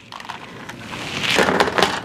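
Rustling and handling noise of toys being rummaged through in a clear plastic storage bin, growing louder, with a few sharp knocks near the end.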